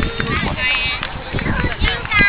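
Background chatter of several voices, some high-pitched, with no clear single speaker.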